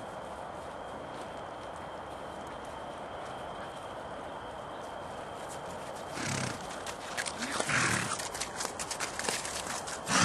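Welsh ponies stirring from about six seconds in: two short calls, the louder one near eight seconds, and a scatter of sharp hoof clicks. Before that, only a steady background hiss.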